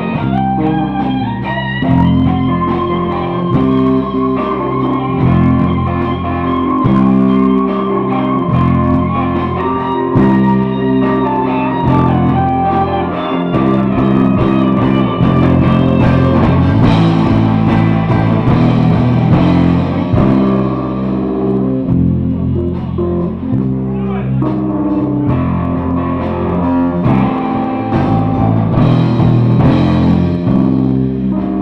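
Live rock band playing, with electric guitar to the fore over bass.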